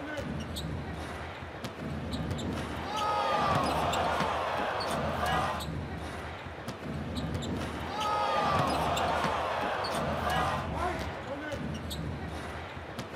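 Live basketball game sound: a ball dribbled on a hardwood court, with short sharp bounces over a steady crowd murmur. Sneakers squeak on the floor in two bunches of high squeals, about three seconds in and again about eight seconds in.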